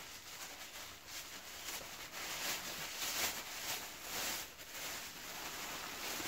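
Crinkly rustling of tissue paper and plastic wrapping being pulled open by hand, in uneven bursts that are loudest in the middle.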